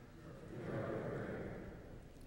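A congregation speaking its response together to the bidding "Lord, in your mercy": many voices blurred into one soft wash that swells and fades over about a second and a half.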